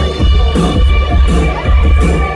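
A song starting live on synthesizer: a heavy electronic bass beat pulses about twice a second under a steady held synth tone, with the crowd cheering.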